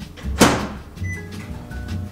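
Microwave oven door shutting with a sharp knock about half a second in, followed by a few short, faint beeps, over background music.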